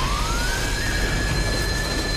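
Anime soundtrack effect: a strong deep rumble under one high tone that glides up over the first half second and then holds steady.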